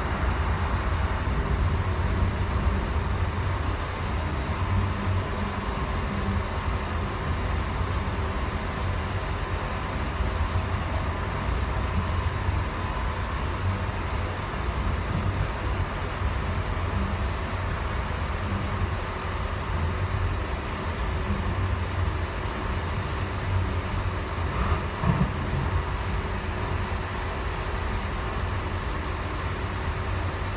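Steady low rumble of a Siemens U2 light rail car running along the track, heard from inside the passenger cabin, with a faint steady whine above it.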